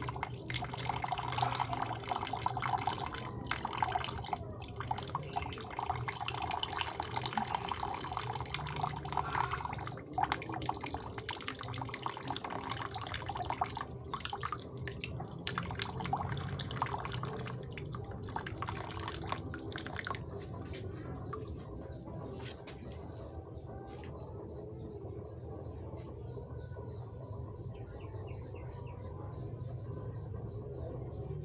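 Water poured from a plastic basin through a fine mesh strainer, splashing and trickling into a tub of water. The pour slackens and stops about two-thirds of the way through, leaving a much quieter background.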